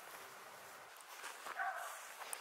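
Faint outdoor background hiss, with one brief faint pitched call about one and a half seconds in.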